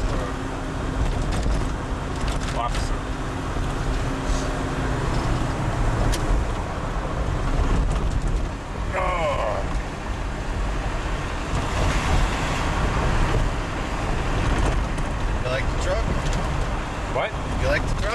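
Steady engine and road rumble heard from inside a moving truck's cabin in city traffic, with a low hum that stops about five seconds in.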